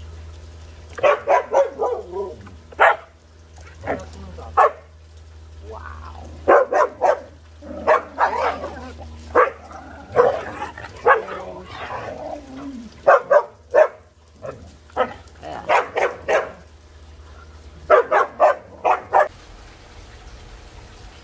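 Husky vocalizing in quick runs of short barks and yips, with a longer stretch of drawn-out, pitch-bending "talking" calls in the middle.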